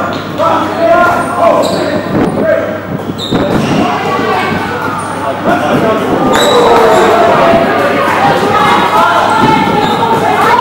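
Dodgeballs bouncing and thudding on a wooden sports-hall floor amid constant indistinct shouts and calls from players, echoing in the large hall. A few short high squeaks, typical of sneakers on the court, come through.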